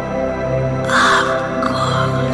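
Slow, calm meditation music with sustained held chords, and a bird's harsh call twice about halfway through, the first louder than the second.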